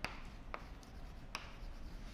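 A few separate keystrokes on a computer keyboard, sharp light clicks spaced roughly half a second to a second apart, over faint room noise.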